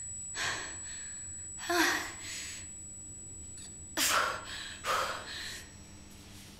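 A woman gasping and breathing heavily: about five sharp, breathy gasps with short pauses between them.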